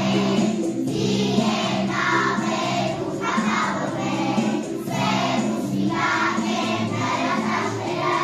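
A group of young children singing together in chorus over musical accompaniment, the sung phrases running on without a break.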